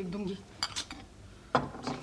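Crockery and cutlery on a table: a few light clinks of a plate, jar and spoon being handled.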